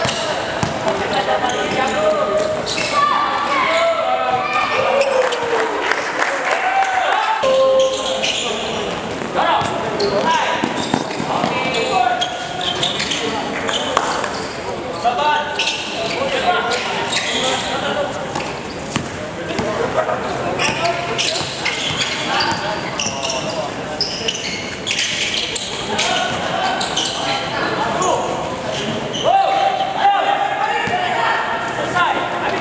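A basketball bouncing on a hard court during live play, with people's voices from around the court throughout.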